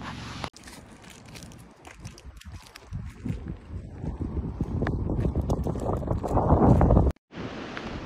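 Wind rumbling on the microphone, growing louder over a few seconds and cutting off suddenly near the end.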